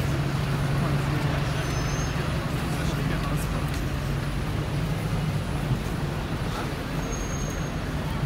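City street traffic with a double-decker bus running close by, its engine a steady low drone, over a haze of street noise. Two brief high squeaks come through, about two seconds in and near the end.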